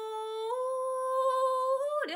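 A woman singing one long held note in Japanese folk (min'yō) style, unaccompanied. The note steps up slightly about half a second in and slides up again near the end.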